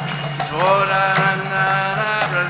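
Devotional chanting with a harmonium: a voice glides up into a long held note about half a second in, over the harmonium's steady drone, with light percussion strikes.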